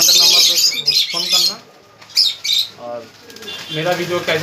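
Pigeons flapping their wings in a loft: a loud flurry in the first second and a half, then shorter bursts about two seconds in.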